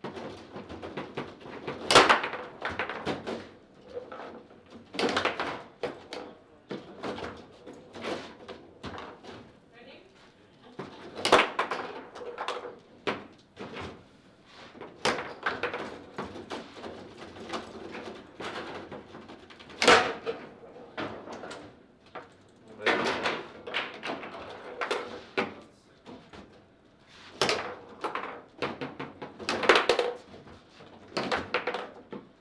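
Table-football play: the hard ball struck by the plastic figures and rebounding off the table walls, with rods sliding and knocking against the table, in irregular bursts of sharp clacks. The loudest hits come about two, eleven and twenty seconds in, and a goal is scored during the rally.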